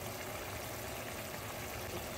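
Beef and vegetable broth simmering in a skillet on a gas stove: a steady, even hiss with no breaks.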